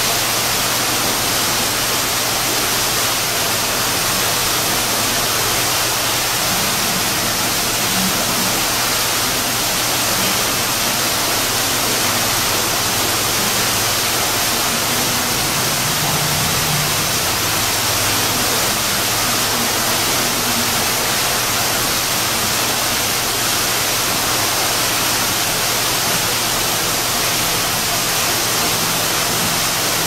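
Steady, loud rushing noise with a low hum underneath, unchanging throughout.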